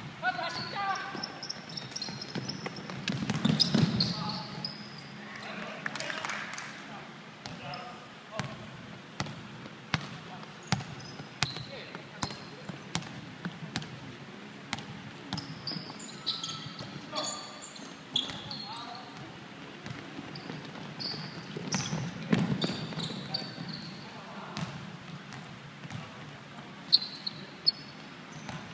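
Basketball bouncing on a wooden sports-hall floor during play: sharp bounces at irregular intervals, with voices calling across the large, echoing hall.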